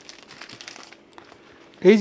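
A clear plastic bag crinkling as a sheaf of papers is drawn out of it, the rustle fading out about a second in.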